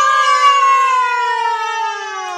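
A high-pitched voice holding one long, loud drawn-out note, its pitch sliding slowly down.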